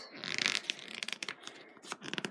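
Pages of a Panini Premier League 2021 sticker album being handled and turned. The glossy paper rustles, then gives a quick run of small crisp crackles.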